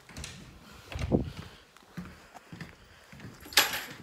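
Handling and movement noises. A dull thump comes about a second in, then a few light knocks, and a short rustling swish near the end.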